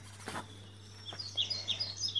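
Small birds chirping faintly in the background: a run of short, high chirps starting just over a second in, over a low steady hum.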